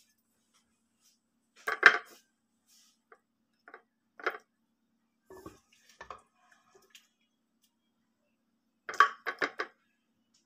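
Metal serving spoon clinking and knocking against a ceramic plate as mutton curry is dished onto it. The loudest clatter comes about two seconds in, a few lighter knocks follow through the middle, and a quick run of three or four clinks comes near the end.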